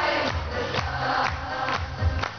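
Children's choir and a woman's lead voice singing over an amplified backing track with a steady beat of about two strokes a second.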